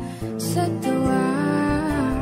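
Music: a Filipino pop love ballad, a singer holding long notes over instrumental backing.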